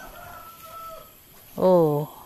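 A rooster crows faintly, one held call of about a second. A woman's spoken 'oh' comes near the end.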